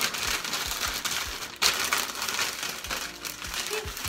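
Sheet of newspaper rustling and crinkling as it is folded and wrapped by hand around celery stalks, with a sharper, louder crackle about a second and a half in.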